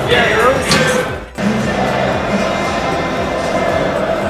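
Football stadium ambience: voices and music over a crowd, with a brief dip in level about a second in where the footage cuts.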